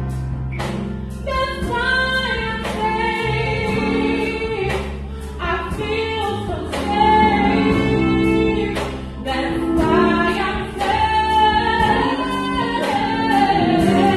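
Female gospel vocal group singing: a soloist leads on a microphone while the other women sing backing, over accompaniment with a steady beat.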